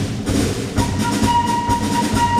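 Wind band playing an instrumental passage: a pulsing low accompaniment, joined a little under a second in by one high held note.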